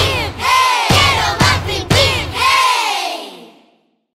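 Closing logo jingle of a children's cartoon: a group of voices shouting in swooping, rising-and-falling calls over about four sharp drum hits. The last call trails off near the end.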